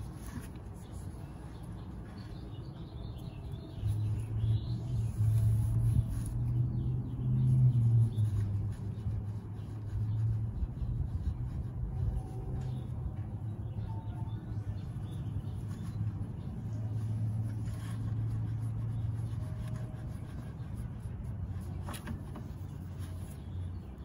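A motor vehicle's engine running, a low hum that comes in about four seconds in, is loudest around eight seconds, then carries on steadier and a little quieter.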